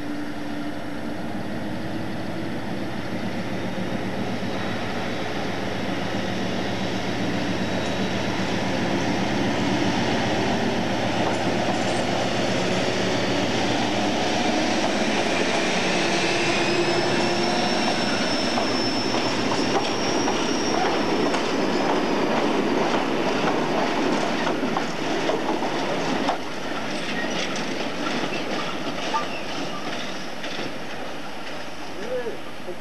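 British Rail Class 56 diesel locomotive, with its Ruston-Paxman V16 engine, running past at the head of a freight of tank wagons. The low engine hum fades about halfway through and gives way to the rumble of wagon wheels on the rails, with a high wheel squeal for a few seconds and a run of clicks over rail joints near the end.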